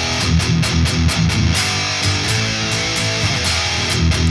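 Distorted electric guitar (ESP LTD M-1000HT) playing power chords at the third and fifth frets. It opens with fast picked chugs, about five strokes a second for the first second and a half, then the chords are left to ring.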